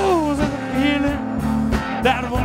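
Live electric blues trio playing: electric guitar, bass guitar and drums, with a sung note gliding down at the start and bent, wavering guitar notes after.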